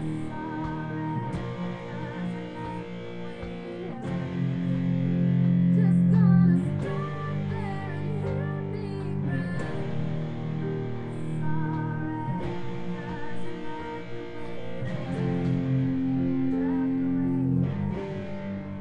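Guitar playing a slow chord progression, the chords ringing out and changing every few seconds. It is the instrumental intro before the singing comes in.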